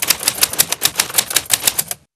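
Typewriter sound effect: rapid, evenly spaced key clicks, about nine a second, that cut off suddenly near the end.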